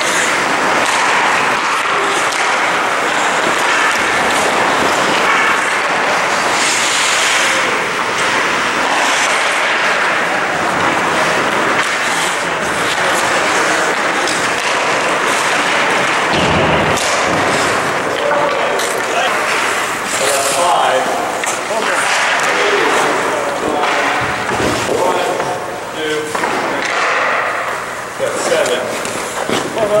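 Ice hockey skates carving and scraping on rink ice during a drill, with brief hissy sprays from hard stops, occasional knocks of sticks and puck, and voices of players in the background.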